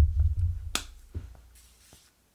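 Handling noise from a camera being gripped and moved: a sudden low rumble that fades out over about a second and a half, with a sharp click partway through and a smaller one soon after.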